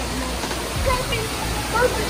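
Steady rush of running water, like an aquarium waterfall or circulating tank water, with brief faint snatches of voices over it.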